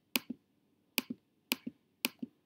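Three computer mouse clicks selecting items in a list, each a sharp click of the button going down followed a moment later by a softer click as it comes back up. The last two come about half a second apart.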